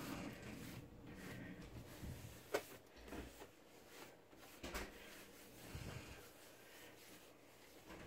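Faint handling sounds over quiet room tone: a few light clicks and knocks, the sharpest about two and a half seconds in and another near five seconds.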